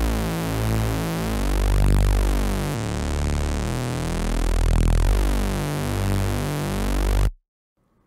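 NI Massive synth bass patch playing a short sequence of long, low notes. It is set monophonic with glide, three-voice unison and a low-pass filter. It cuts off suddenly about seven seconds in.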